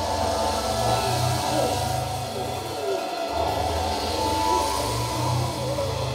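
Live psychedelic noise-rock played by a band: a held low bass drone that drops out briefly about three seconds in, under wavering, gliding higher tones and a noisy hiss.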